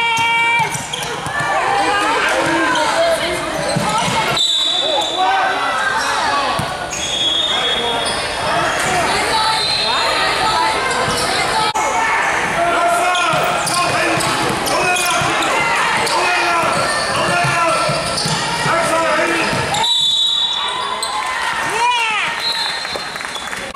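Basketball game sounds in an echoing gym: many short squeaks of sneakers on a hardwood court, and a basketball being dribbled, with players' and coaches' voices calling out.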